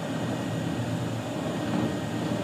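Steady background noise with no distinct event: room tone.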